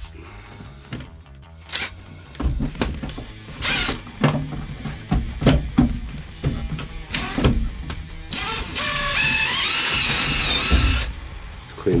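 Cordless impact driver run in one burst of about three seconds near the end, on a bolt in an old pickup's cab floor, with tool knocks and clatter before it. Background music plays under it.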